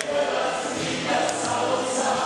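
Live group singing: several voices singing together in chorus over musical accompaniment.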